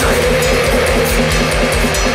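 Atmospheric black metal: a dense wall of distorted guitars over fast, steady drumming with frequent cymbal hits.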